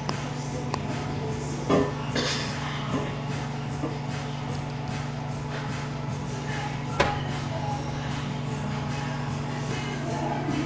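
Microwave oven running: a steady electrical hum, with a few short sounds about two seconds in and a single sharp click at about seven seconds.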